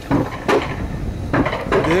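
Alpine-coaster sled running along its metal rail track on the uphill haul: a steady low rumble with a few sharp clanks from the sled and rails.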